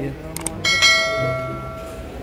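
Two quick clicks followed by a bright bell ding that rings for about a second: the click-and-notification-bell sound effect of a YouTube subscribe-button animation.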